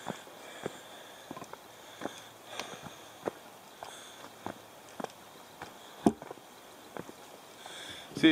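Footsteps of a person walking on a dirt forest trail: a run of soft, irregular thuds about one every half second to a second. The loudest thump comes about six seconds in.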